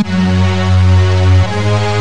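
The 'Bugatti Strings' Kontakt instrument being played as a sound check: loud held notes over a deep low note, moving to a new chord about a second and a half in.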